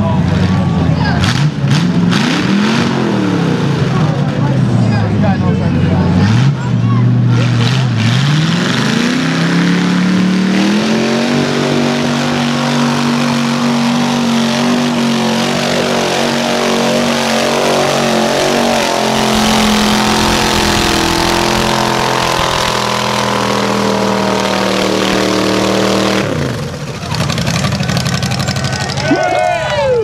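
Flat-fender Jeep's engine revving hard as it drives through deep mud, the revs rising and falling for the first several seconds, then held high for about fifteen seconds before backing off near the end.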